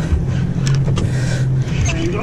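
Boat engine running steadily with a low hum, under wind and water noise, with a few sharp clicks near the middle.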